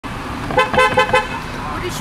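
Car horn tooted four times in quick succession, short steady-pitched beeps.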